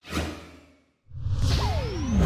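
Whoosh sound effects for an animated logo intro: a sudden whoosh hit that fades out within a second, then after a brief gap a second whoosh swelling up, with a tone sweeping downward and a thin high tone rising over it.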